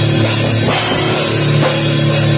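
Metal/hardcore band playing at full volume: distorted electric guitars and bass over drum kit and cymbals, with no vocals in this stretch.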